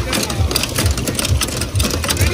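A low, engine-like running sound with a quick, uneven pulsing, over the general noise of an outdoor crowd.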